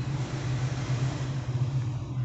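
A steady low hum under an even hiss, unchanging throughout.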